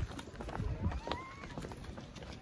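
Footsteps of several people walking on a cobblestone path, irregular knocks of shoes on stone.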